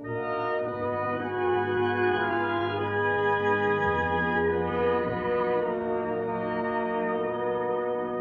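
Orchestral music: slow, held chords with brass, likely horns, to the fore, swelling in at the start.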